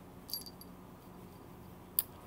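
Quiet room tone with a faint steady hum, a brief soft rustle about a third of a second in, and a single sharp click at the very end.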